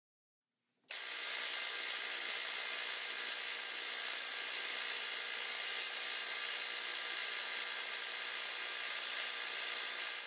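Spark-gap Tesla coil firing: a steady, harsh electric buzz of the spark gap and arcing discharge. It starts abruptly about a second in and cuts off suddenly at the end.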